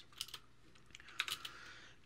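Computer keyboard typing, faint: a couple of single keystrokes, then a quick cluster of clicks a little past halfway.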